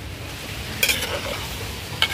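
A pan of milky dumpling mixture simmering with a steady hiss. A metal ladle gives one short click against the aluminium pan a little under a second in.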